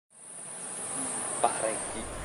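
Insects droning in a steady, high-pitched buzz that fades in at the start.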